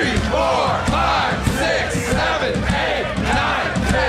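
A live audience shouting together in a loud, rhythmic chant, many voices rising and falling about twice a second, counting along with push-ups.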